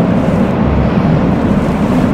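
Steady low rumble of a moving car, heard from inside the cabin, with no other event standing out.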